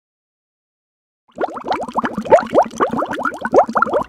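Bathwater bubbling and gurgling in a quick, busy run of rising plops, starting suddenly after just over a second of silence.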